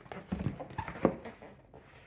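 Cardboard shipping box being handled and tilted, its sides and flaps knocking and scraping in a few short thumps, the sharpest about a second in.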